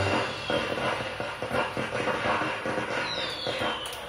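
Dance music stops right at the start, leaving irregular background noise with scattered short knocks and, near the end, a faint falling whistle-like glide.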